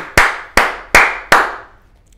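A man clapping his hands four times at an even pace, about two and a half claps a second, each clap with a short room echo. The claps come right after a flubbed line and before the line is restarted, the way a presenter marks a retake for the editor.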